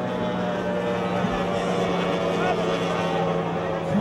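Outboard engine of a racing tunnel-hull powerboat running at speed, a steady, even engine tone that holds one pitch.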